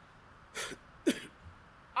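A man clearing his throat with two short coughs, about half a second and a second in.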